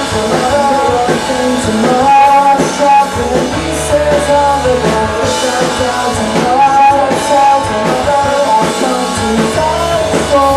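A rock band playing live and loud, with electric guitars to the fore.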